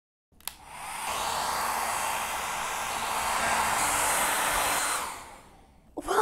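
A hair dryer clicks on, blows steadily for about four seconds, then is switched off and runs down.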